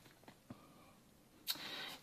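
Near silence: room tone, with a soft brief rustle about one and a half seconds in.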